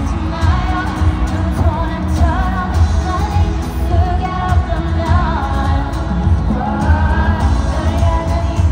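Live K-pop music played loud through an arena sound system: women singing over a heavy, pulsing bass beat.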